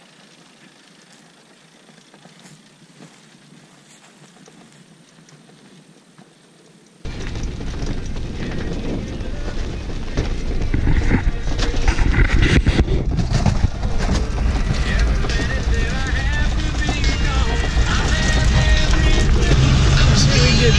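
A faint hiss, then about seven seconds in a sudden switch to loud, steady wind and road noise from riding the Organic Transit ELF, a pedal-electric velomobile trike.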